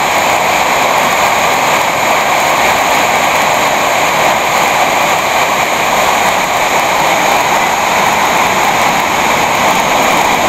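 Steady, loud roar of a waterfall in high water, close to the microphone, unbroken throughout.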